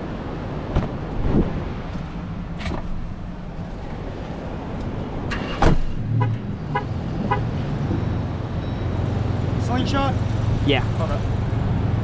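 Jeep's engine idling steadily, with a few sharp clicks and knocks and a short run of electronic beeps about half a second apart around the middle.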